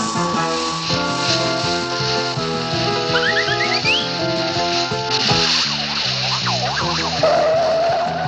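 Cartoon background music. A quick rising glide comes about three seconds in. From about five seconds the music gives way to swooping, wavering sound effects, with a warbling siren-like tone near the end.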